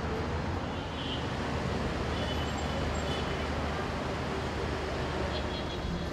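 Steady city street ambience: a continuous traffic rumble with faint voices among it.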